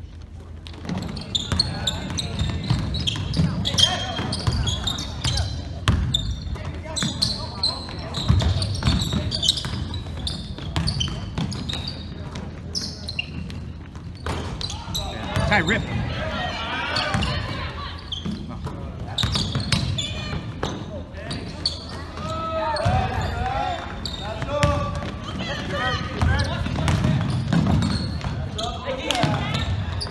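Basketball game in a gym: the ball bouncing on the hardwood floor in repeated sharp knocks, with short high squeaks of sneakers on the court, under players' and spectators' shouts in the echoing hall.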